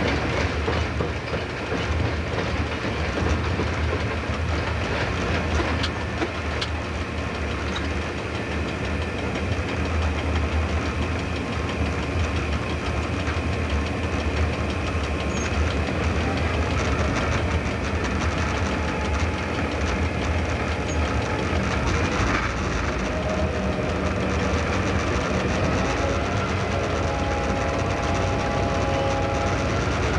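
Cab sound of an X class diesel-electric locomotive under way: a steady low engine rumble with wheels clicking over rail joints and pointwork. In the second half a wavering whine rises and falls over the rumble.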